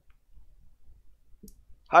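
A pause on a telephone line, quiet apart from one brief click about one and a half seconds in; a voice starts at the very end.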